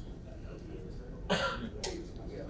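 A single short cough about two-thirds of the way in, followed by a sharp click, over quiet room hum.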